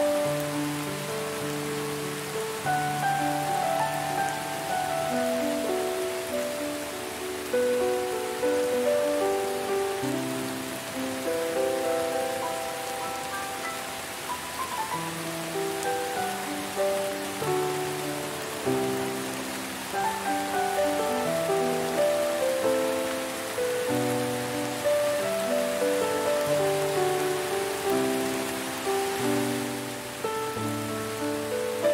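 Steady rain falling, with slow, calm melodic music laid over it: held notes changing every second or so.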